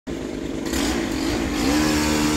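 Powered pole saw running, its motor revving up with a rising pitch near the end.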